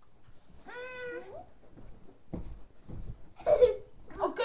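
A high-pitched, meow-like cry lasting about a second, ending on a rising note, and then a shorter, louder vocal sound near the end.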